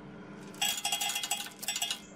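A fast run of sharp metallic clicks and clinks at a multi-fuel boiler's steel burner pot during its ignition phase on corn, starting about half a second in and lasting about a second and a half, over a faint steady hum.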